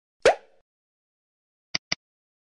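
Edited-in outro sound effects: a short pop that glides up in pitch, then near the end a quick double mouse click as the animated cursor clicks the Subscribe button.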